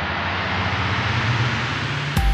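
A sound-design riser: a steady whoosh of noise over a low rumble, slowly swelling and getting brighter, like a jet passing.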